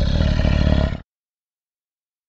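Tiger roar sound effect that cuts off abruptly about a second in, followed by dead silence.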